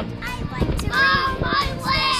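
Children's high-pitched voices calling out, starting about halfway through, over a low rumbling noise in the first second.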